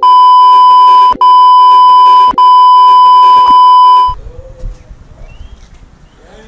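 A loud, steady 1 kHz beep tone of the kind dubbed on in editing to censor speech. It runs for about four seconds in segments with two brief breaks, then cuts off suddenly. While it sounds, the scene's own sound drops out beneath it.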